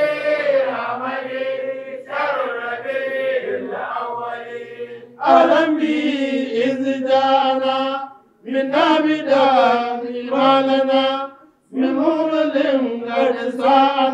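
A man's voice chanting an Arabic devotional qasida in long melodic phrases, with short pauses for breath about eight seconds in and again near eleven and a half seconds.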